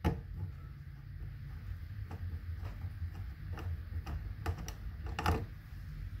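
Small screwdriver turning in the cover-plate screws of a range outlet by hand, giving a few scattered light clicks and ticks.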